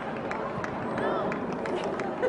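Several people's voices, players and spectators at a distance, calling out and chatting over the open-air background noise of the field.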